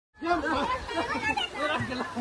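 Voices of several people chattering.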